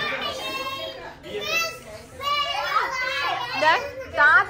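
Several high-pitched voices talking and exclaiming over one another, with a short lull about two seconds in.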